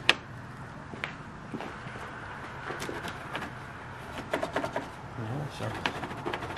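Plastic push clips on a Jeep Wrangler JL grille being pried out with a screwdriver: a sharp snap right at the start, a few more clicks, plastic rubbing and scraping, and a cluster of clicks near the end.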